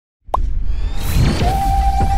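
Logo-intro sound design: a short pop about a quarter second in, a rising whoosh, then a steady synth tone coming in about one and a half seconds in over a deep bass drone.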